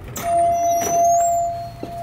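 A glass-paned entrance door being opened and walked through: two sharp latch clicks, high squeaks, and a steady mid-pitched tone held through most of it.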